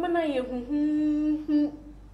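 A woman's voice making a drawn-out hesitation sound between words: a falling start, then a hum held on one steady pitch for most of a second, then a short syllable.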